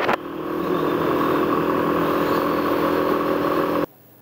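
Yamaha XT250 single-cylinder motorcycle engine running at a steady pitch under way. Wind on the microphone is heard only at the very start, and the engine sound cuts off abruptly near the end.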